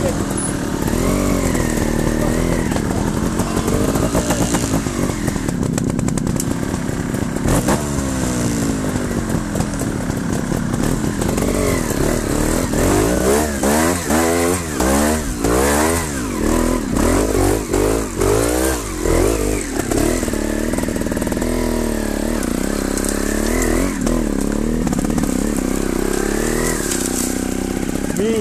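Trials motorcycle engine revving at close range, the throttle worked on and off so the pitch keeps rising and falling, with a run of quick, sharp rev bursts about halfway through.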